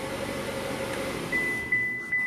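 2018 Chevrolet Traverse RS's turbocharged four-cylinder engine idling, heard as a steady noise from inside the cabin. About two-thirds of the way in, a thin, steady high tone starts and holds.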